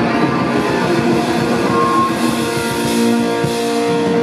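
A live punk rock band playing with electric guitar, bass guitar and drum kit, at a steady loud level. This is an instrumental stretch with no vocals.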